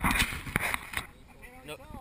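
Men's voices outdoors: talk and laughter, with a short rush of noise and a couple of clicks in the first second before speech resumes.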